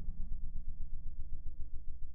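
A heavily slowed, pitched-down voice from a voice-changer effect: a low drone with a rapid pulsing flutter, its pitch slowly sinking as it fades.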